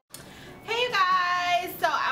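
A woman's voice, drawn out and sing-song, starting a little over half a second in after a brief silence.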